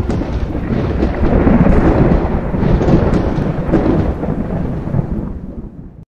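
Thunder-like rumbling sound effect of an animated smoke-and-fire video intro. It is loud and steady and fades away over the last second.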